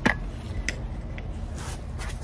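Handling noise from a phone being moved and set back in place close to its microphone: a sharp click at the start, then a couple of light ticks over a low rubbing rumble.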